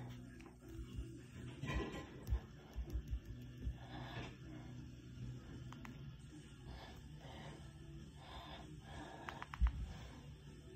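Quiet room with a faint steady low hum, soft breaths, and a few light handling bumps, most of them in the first few seconds and one more near the end.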